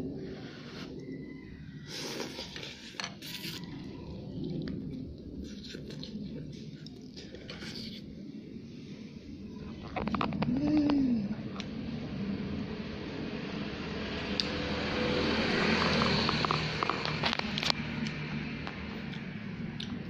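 Eating instant noodles with chopsticks: scattered short clicks of the chopsticks against the bowl with slurping and chewing, and a short hummed "mm" about halfway through. A steady hiss swells through the second half.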